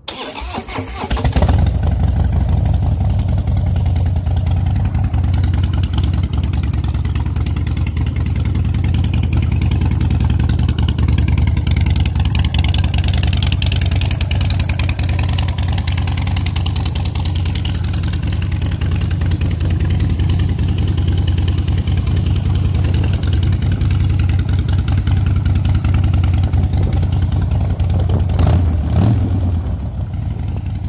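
2016 Harley-Davidson Dyna Low Rider's air-cooled Twin Cam 103 V-twin starting up and coming up to speed within about a second and a half, then idling steadily.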